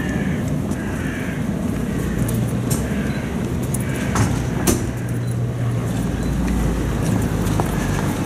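Low, steady rumble of a car engine running alongside outdoor street noise, with faint voices murmuring. Two sharp knocks come about four seconds in.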